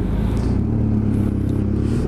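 BMW F800GS motorcycle's parallel-twin engine running steadily as the bike rides along, with road and wind noise.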